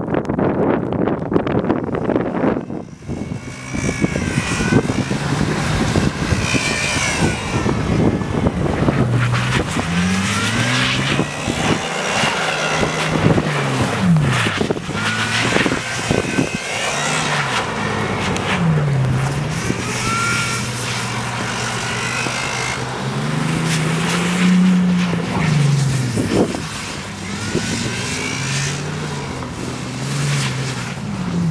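Bentley Continental GTC's W12 engine revving up and falling back again and again as the all-wheel-drive car spins and slides through snow on winter tyres, over a steady rush of tyres and snow. The first few seconds are a rough rushing noise before the engine's rise and fall comes through clearly.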